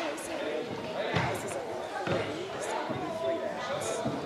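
Indistinct chatter echoing in a large gym hall, with two dull thuds about a second and two seconds in. The thuds are typical of a karateka's bare feet landing on the wooden floor during a kata.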